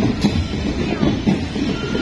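Marching band drums playing a steady marching beat, with heavy low drum hits about twice a second and an occasional sharp higher strike.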